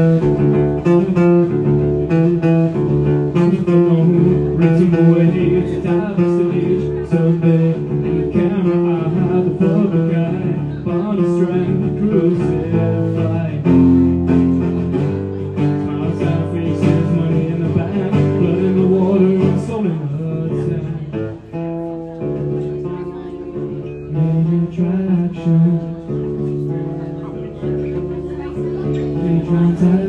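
Acoustic guitar strummed and picked through a PA in a rock song, with a male voice singing over it.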